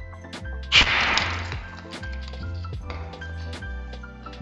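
A homemade compressed-air cannon fires a load of Christmas ornaments: one sudden loud burst of air less than a second in, fading over most of a second. Background music with a steady beat plays throughout.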